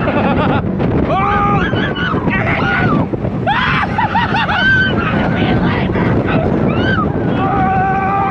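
Roller coaster ride heard from the seat: loud wind rushing over the microphone as the train runs at speed through a loop, with riders yelling and screaming over it, ending in one long held cry.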